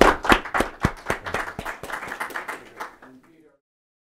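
Applause, hands clapping, fading away and cut off suddenly about three and a half seconds in.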